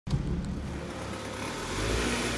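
A car's engine running at low speed, a steady low rumble that grows a little louder near the end.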